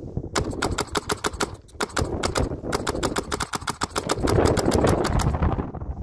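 DLX Luxe TM40 paintball marker on its mechanical trigger frame firing a rapid string of shots, several pops a second in an uneven rhythm.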